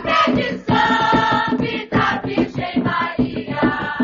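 An Umbanda ponto: a choir of voices singing over steady drum beats.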